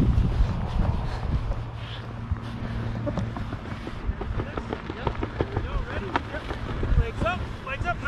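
Wind rumbling on the microphone, with scattered small ticks and knocks. Short high whooping calls start near the end.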